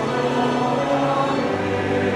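Large church choir singing an anthem in held chords, with a low bass note coming in about a second and a half in.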